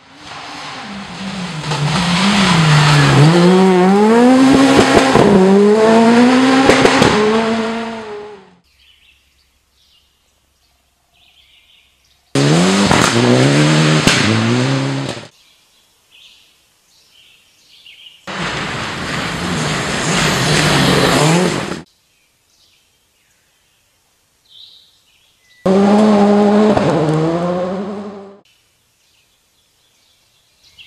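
Rally car engines revving hard and shifting up and down as the cars run a gravel stage, heard in four separate passes that cut in and out sharply. Between the passes it is quiet, with birds chirping faintly.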